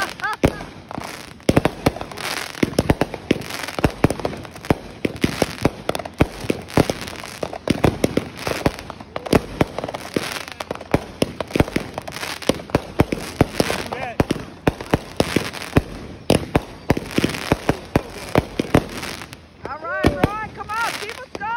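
Aerial fireworks bursting overhead in a rapid, continuous barrage: sharp bangs and crackling pops, several a second, with a whistling shell starting right at the end.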